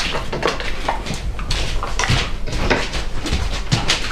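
A run of short knocks and clatter, like dishes and utensils being handled on a kitchen counter, over a steady low hum.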